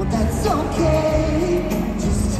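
A live pop ballad: a male lead singer sings into a handheld microphone over the band's backing, with one long held note in the middle. It is recorded from the audience.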